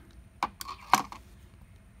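Two sharp clicks about half a second apart, with a quiet "all right" spoken between them.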